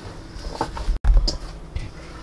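Hands kneading soft flour tortilla dough in a stainless steel mixing bowl: low thuds and faint clicks as the dough is pushed and turned against the bowl. The sound drops out briefly at an edit about halfway through.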